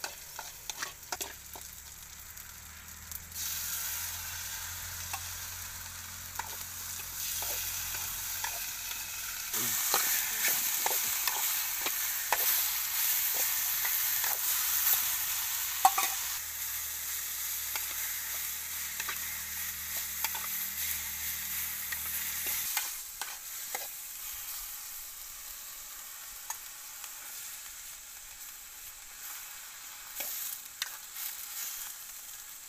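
Food frying and sizzling in a blackened wok over a wood fire, with the spatula scraping and clicking against the metal as it is stirred. The sizzle builds a few seconds in, is loudest for several seconds, then eases off and drops lower for the last several seconds.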